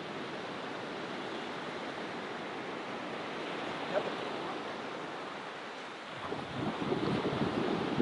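Ocean surf on a beach: a steady wash of small waves, rising louder from about six seconds in as a wave breaks and rushes up the sand.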